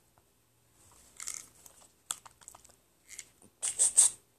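Faint clicks and rustling from a mobile phone being handled and tapped, a cluster of small taps about two seconds in and a louder rustle near the end.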